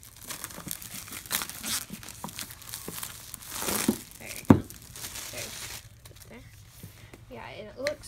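Clear plastic shrink-wrap being torn and peeled off a cardboard board game box, crinkling in quick bursts, with one sharp tap about halfway through.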